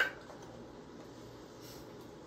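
A ladle clinks once, sharply, against the crockpot as hot cider is scooped out, with a brief ring; then only quiet room noise.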